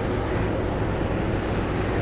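Steady wind rushing over the microphone, mixed with the wash of the sea along the side of a cruise ship under way, and a low hum underneath.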